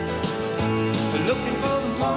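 Country-pop band music with guitar, playing steadily.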